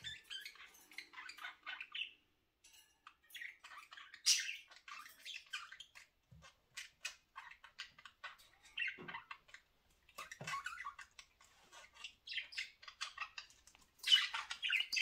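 Pet budgerigars chattering: a steady run of short, quick chirps and squawks from several birds. The chatter pauses briefly about two seconds in.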